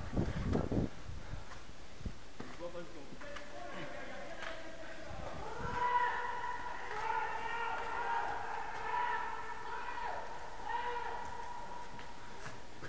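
Footsteps and gear bumps on a concrete stairwell, with low knocks in the first second. From about halfway, distant voices call out in the echoing building.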